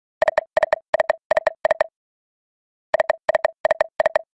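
Online slot game's electronic reel sounds: a run of five short beeps at one steady pitch, about three a second, then a pause of about a second and another run of five beeps as the next spin's reels play out.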